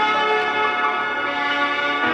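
Bells ringing, many tones overlapping and hanging on, with fresh strikes near the start and the end.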